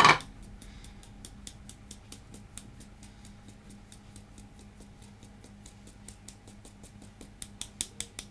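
Hand tapping the side of a red plastic-rimmed sieve to shake self-raising flour through into a mixing bowl: a quick run of light taps, several a second, louder near the end.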